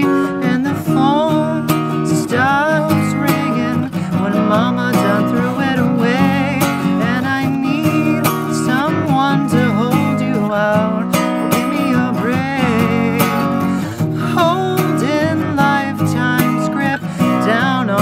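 Acoustic guitar strummed steadily, with a wavering melody line above it.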